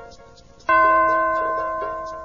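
Read-along page-turn signal: a single bell chime struck about two-thirds of a second in, ringing and slowly fading.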